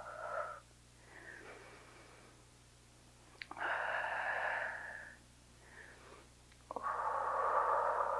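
A folded dish towel used as a slider swishing across a hardwood floor under a bare foot in a sliding back lunge. A swish comes about three and a half seconds in as the leg slides back, and another near the end as the foot slides back in, with fainter swishes before them.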